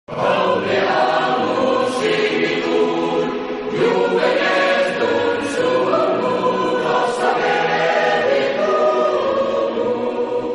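Opening theme music sung by a choir in sustained chords, beginning to fade near the end.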